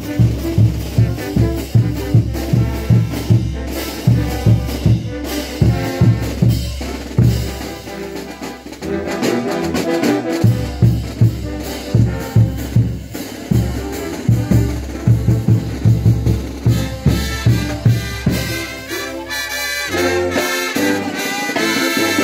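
Brass band of trumpets and trombones with drums playing tinku music, a steady beat of about two to three drum strokes a second. The drums drop out briefly about eight seconds in and again near the end while the brass carries on.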